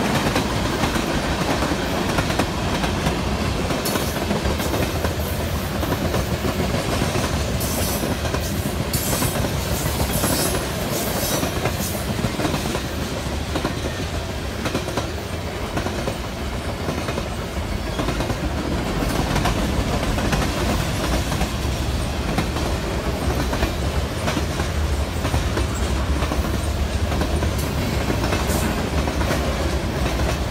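Freight train cars (tank cars and covered hoppers) rolling past close by, with a steady sound of wheels running on the rails. A cluster of brief sharp high sounds comes between about 4 and 12 seconds in.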